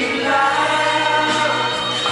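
Live Thai pop ballad: a man singing, holding one long note over the backing music.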